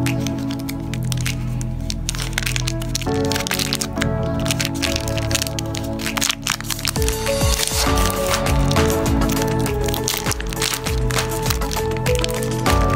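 The plastic wrapper of a mini Mars chocolate bar crackling and tearing as it is pulled open by hand, in quick clicks that grow busier from about three seconds in. Background music plays throughout.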